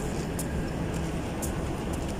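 Steady low rumble of wind on the phone's microphone, with faint high ticks roughly every half second.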